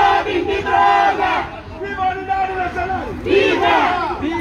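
A small crowd of demonstrators shouting slogans together in long, overlapping calls, loudest at the start, about a second in, and near the end.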